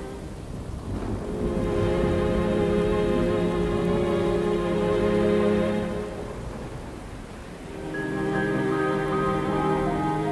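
Steady rain with a thunder rumble that swells over several seconds and fades about six seconds in, under slow, sustained ambient music.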